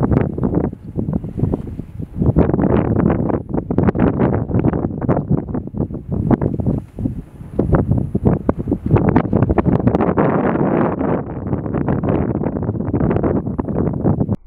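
Wind buffeting the microphone in loud, irregular gusts, a rough rumbling noise that cuts off suddenly at the end.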